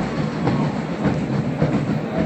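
Stadium noise around a large marching band on the field between tunes, with no melody: a steady rumble with faint beats about twice a second.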